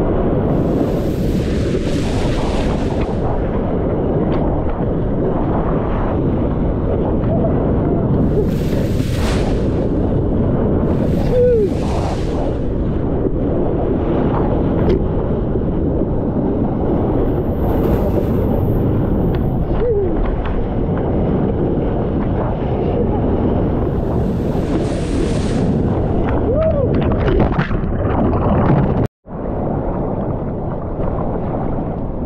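Heavy, steady rumble of wind and rushing water on a GoPro's microphone as a surfboard planes across a wave, with bursts of hissing spray every few seconds. The sound cuts out briefly near the end.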